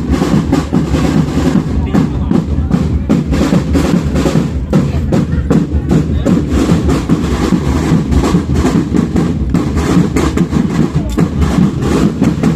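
Marching band drumline playing continuously: snare drums and bass drums beating a dense cadence with rolls.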